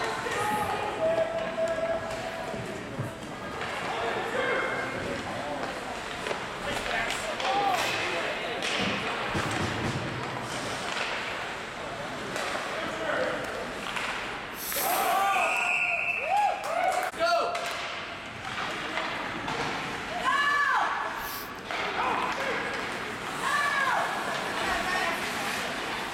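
Sounds of an ice hockey game: sharp knocks of sticks, puck and bodies against the boards, with shouts from players and spectators. The shouts come in clusters about fifteen to seventeen seconds in, again about twenty seconds in, and at the end.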